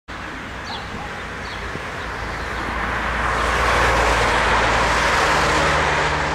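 A car driving by close on the road, its engine and road noise growing louder to a peak about four to five seconds in, with a few faint bird chirps near the start.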